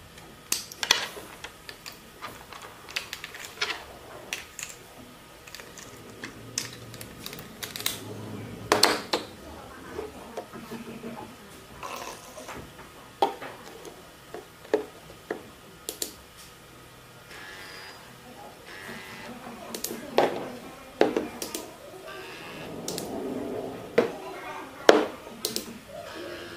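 Irregular plastic clicks and knocks from a touchless foaming soap dispenser and its parts being handled and fitted. Two short stretches of steadier noise come about two-thirds of the way through and again shortly before the end.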